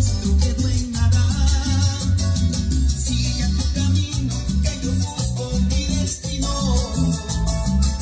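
Salsa music played through a Sony MHC-GPX7 mini hi-fi system, with heavy, pulsing bass under the melody.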